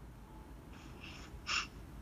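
Faint breath sounds: a soft breath about three quarters of a second in, then a short, sharper intake of breath about a second and a half in.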